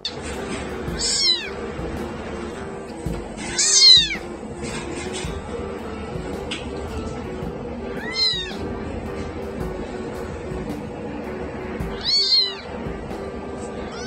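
A very young kitten meowing four times, a few seconds apart, each cry high and arching up then down in pitch, over background music.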